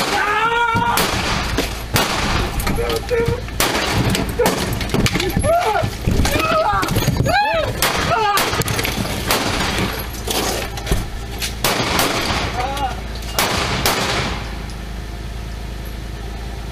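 A violent close struggle heard on a police body camera: a long series of sharp bangs and knocks with wordless shouts and cries, all loud. About fourteen seconds in it drops to a steady low hum.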